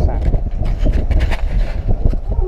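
Wind rumbling and buffeting on the camera microphone, with people's voices talking in the background.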